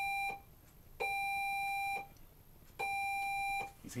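Morse code sent on a hand key through a practice oscillator: long steady beeps keyed as dashes. One dash ends just after the start, then two more follow, each nearly a second long with pauses of about the same length between them.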